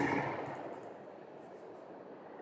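A single sudden knock right at the start, fading within about half a second, then low room noise with faint strokes of a marker writing on a whiteboard.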